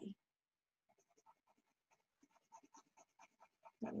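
Coloured pencil scratching on paper: faint, quick back-and-forth shading strokes that start about a second in.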